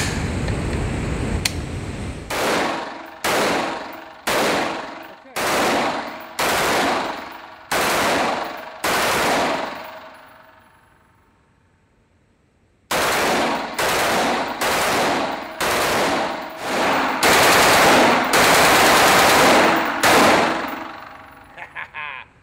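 Semi-automatic AR-15 bump-fired through a Slide Fire bump stock. Two sharp single shots come first, then short strings of rapid fire at about one burst a second, each ringing off the indoor range. The sound cuts out for about two seconds midway, then comes back as longer, closer-spaced bursts near the end.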